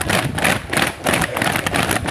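Boots of a squad of navy trainees marching quickly past on asphalt: a steady, even rhythm of footfalls, about three or four a second.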